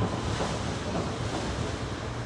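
Steady street ambience: an even wash of wind noise on the microphone over a low city rumble.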